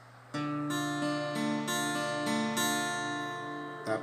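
Acoustic guitar fingerpicking a D minor chord: the open D bass string is struck first, then the treble strings are plucked one at a time in a rolling 1-2-3 pattern, the notes ringing over each other. The playing starts about a third of a second in and is damped just before the end.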